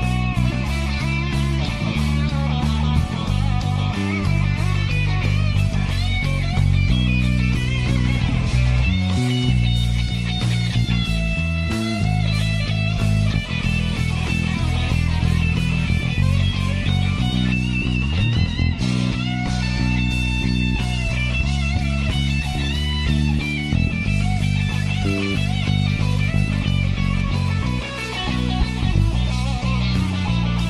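Four-string electric bass guitar playing a folk-rock bass line of steadily changing notes along with a rock backing track, with a sliding bass note about two-thirds of the way through.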